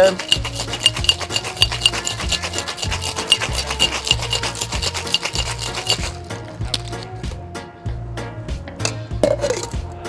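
Ice cubes rattling hard inside a metal cocktail shaker during a firm wet shake of an egg-white sour. The clatter is fast and even, stops about six seconds in, and is followed by a few lighter clinks of ice and metal.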